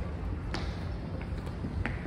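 Outdoor background noise: a steady low rumble with a couple of faint clicks, one about half a second in and one near the end.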